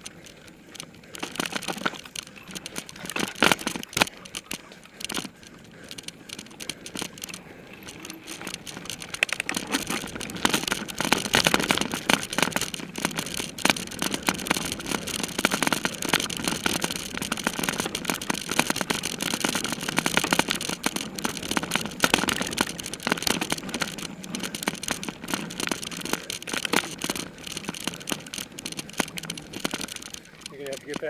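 Mountain bike rattling and clattering over a rough dirt trail, with a continuous run of knocks and jangles and tyre noise on the ground. It grows louder and busier about ten seconds in.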